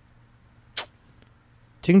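A man's quick, sharp intake of breath close to the microphone, a short hiss a little under a second in, during a pause in his talk. Otherwise quiet room tone with a faint low hum.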